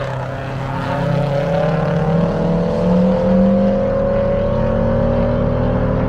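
Car engines on a race track, running hard with their note climbing steadily in pitch as they accelerate away through a corner, over a low rumble.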